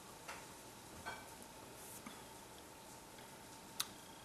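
A man sipping and swallowing beer from a glass, heard faintly: a few soft mouth and swallow clicks over a steady low room hum, with one sharper click near the end.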